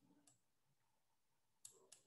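Near silence, with a few faint, short clicks near the end from a computer mouse as the on-screen document is scrolled.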